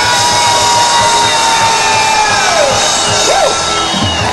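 Live rock band playing loudly over a steady drum beat, with a long held high note that slides down about two and a half seconds in.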